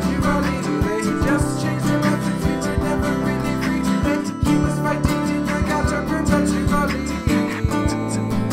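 Instrumental acoustic hip hop: acoustic guitars playing over a sustained low bass line and a steady beat of sharp hits, the kick drum made by tapping the microphone.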